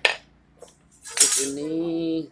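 Metal cable hardware clinking as it is handled: a sharp clink at the start and another metallic rattle a little over a second in, as an aluminium dead-end clamp is set aside and a steel turnbuckle is picked up. A drawn-out voice sound follows near the end.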